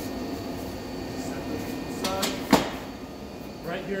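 A single sharp knock about two and a half seconds in, the loudest sound here, as the steel guide-wheel arm of the mobile stretch wrapper is set down on the wooden floor, over a steady background hum.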